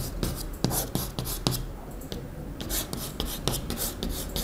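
Chalk writing on a chalkboard: a run of short, irregular scratchy strokes and taps as letters are written.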